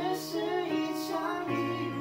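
A woman singing a slow Mandarin pop ballad to acoustic guitar accompaniment; her line gives way about one and a half seconds in to a sustained chord.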